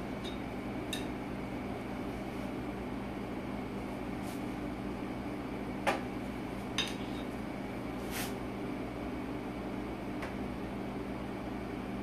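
Steady low hum of a room appliance, with a few scattered light clicks and taps of utensils.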